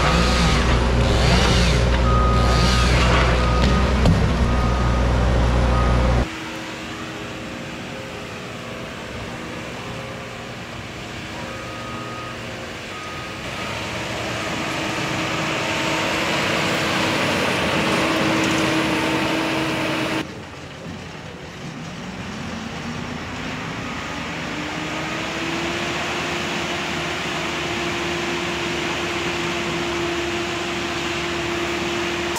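A loud heavy-machine engine with a backup alarm beeping at first. Later the tracked Hurricane stump grinder's engine rises in pitch for a few seconds and then holds at a steady high speed as its cutting wheel grinds into a pine stump.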